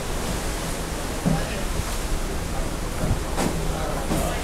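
Steady rushing noise of wind and sea on a ship's open deck, heaviest in the low end, with faint voices now and then.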